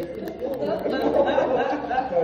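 Several people talking at once: background chatter of a seated group in a large room.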